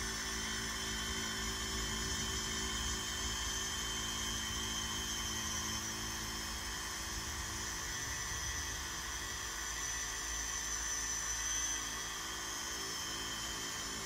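Small cordless orbital nano polisher with a microfiber pad running steadily, working polishing compound into door-jamb paint. It makes an even, high electric whine.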